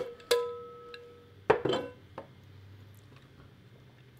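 A single sharp clink that rings on as a clear tone, fading away over about a second.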